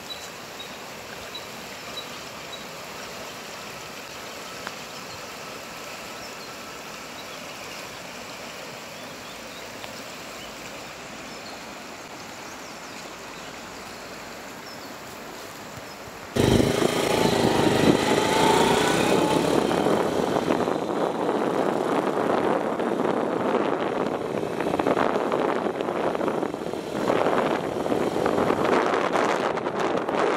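A rocky mountain river rushing steadily over stones. About halfway through it cuts sharply to a much louder, rough, gusting noise: wind buffeting the microphone on a moving motorcycle.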